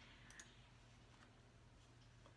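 A few faint clicks of a computer mouse, the clearest about a third of a second in, over near silence.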